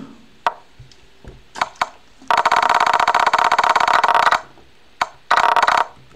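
Rapid strings of chess piece-move clicks from the chess.com board as the game's moves are stepped back through quickly. A few single clicks come first, then a dense run of about two seconds, then a shorter burst near the end.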